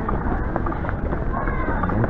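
Footsteps of someone walking, under a steady low rumble of rubbing and handling on a carried camera, with a faint voice about a second and a half in.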